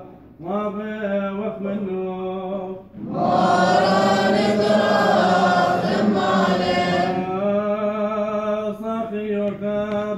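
Church of the East liturgical chant by male voices. A lone male voice chants on steady held notes, then from about three seconds in a louder group of voices joins for about four seconds before the single chanting voice carries on.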